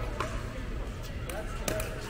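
Plastic pickleball bouncing and popping off paddles and the hard court, a few sharp pops over faint chatter and hum in a large hall.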